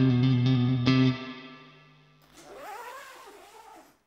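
Russtone RUJM-HSS SK solid-body electric guitar: a chord is struck twice and rings loudly, then is muted about a second in and fades away. After that comes a fainter, hissy sound whose pitch wavers up and down, ending at the close.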